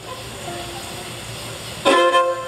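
Steady hall noise with a few faint held string notes, then near the end a bluegrass string band of fiddles, banjos and guitars starts playing together, suddenly and loudly.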